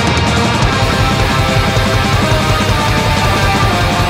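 Instrumental black metal / post-rock band playing: distorted electric guitars over fast, dense drumming, loud and continuous.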